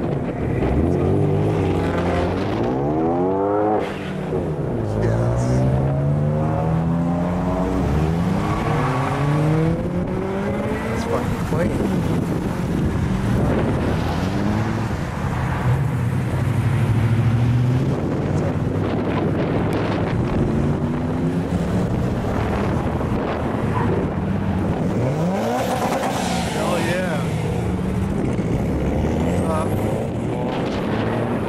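A line of cars driving past one after another. Each engine's pitch slides as the car goes by, and the sound swells and fades with every passing car.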